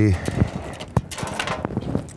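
Fishing tackle being handled by hand: soft rustling with a few small clicks, one sharp click about a second in.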